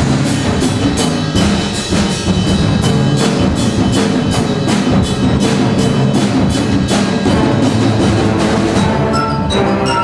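High school concert band playing a loud, driving passage, winds sustaining over a steady pulse of sharp percussion strikes; near the end, ringing mallet-percussion notes come through.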